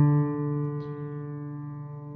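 A low D on the piano, played by the left hand as a bass note, ringing on and slowly fading.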